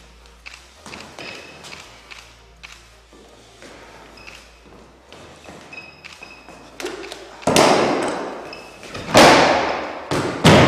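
Bodies thrown onto a wooden floor in martial-arts practice: light taps and scuffs of footwork, then two heavy thuds in the last few seconds that ring on in the hall.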